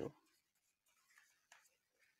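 Faint rustling of a deck of oracle cards being shuffled and handled, barely above near silence, with a tiny tap about one and a half seconds in.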